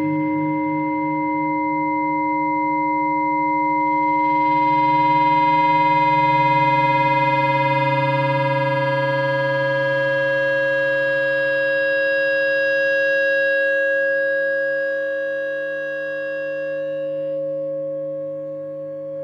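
Electric guitar feedback through an amplifier: a sustained drone of several steady, siren-like tones stacked together. It swells louder and brighter with high overtones partway through, then eases back a little near the end.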